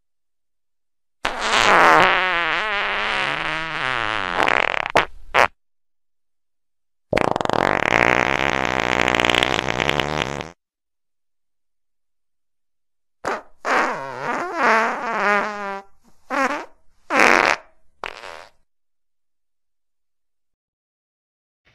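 Fart sounds: two long, wavering farts of three to four seconds each, then a run of about five shorter ones.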